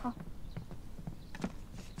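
A few soft, separate taps and knocks on a hard surface, irregularly spaced, the clearest about a second and a half in and near the end.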